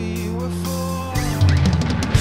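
Progressive rock band recording playing: held bass and keyboard notes for about a second, then a quick drum fill on the kit leading into a louder passage.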